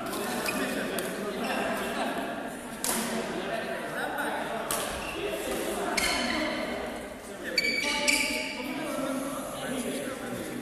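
Echoing sports-hall sound of indistinct voices, with several sharp clicks that ring out in the hall and a short high squeak about eight seconds in.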